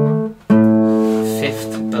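Acoustic guitar played fingerstyle: a bass note on the D string rings and fades, then about half a second in the A string is plucked and rings on as the fifth below the D root.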